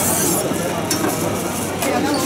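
Thin egg-coated crepe sizzling on a hot round iron griddle, with a metal spatula scraping and lifting it off the cooking surface, loudest right at the start.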